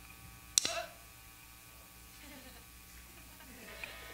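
A low, steady electrical hum, with one sharp click about half a second in and faint voices murmuring in the background.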